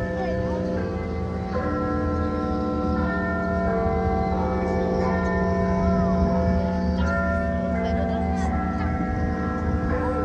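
Big Ben-style clock chimes: bell notes struck one after another about every second or so, each left ringing into the next, over a steady low hum.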